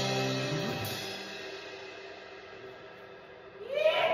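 A rock band's final chord stops about half a second in, leaving the cymbals ringing out and slowly fading. Near the end comes a short, loud shout.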